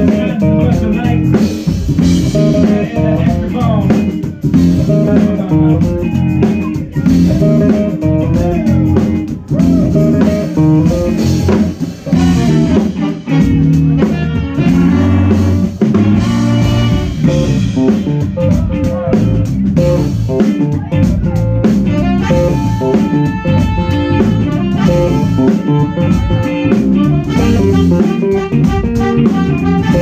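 Live funk band playing an instrumental groove on drum kit, electric guitar and organ. Steady held notes come in over the last third.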